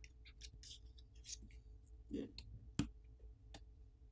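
Plastic pry pick working under the thin graphite film on a smartphone's bottom speaker assembly: faint scratching and crinkling of the film, then a few sharp clicks of the pick against the phone's internals from about two seconds in.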